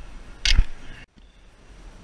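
A single sharp knock about half a second in, from work with hand tools on the car's front hub; the sound then drops away abruptly.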